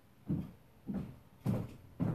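Footsteps in 7-inch high heels on a squeaky hardwood floor: three steps a little over half a second apart, each a short knock on the boards.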